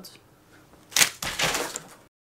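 Deck of playing cards handled for a spread: one sharp snap about a second in, followed by a short rustle of the cards.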